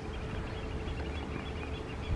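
Quiet harbourside ambience: a low steady rumble with a faint continuous hum and no distinct event.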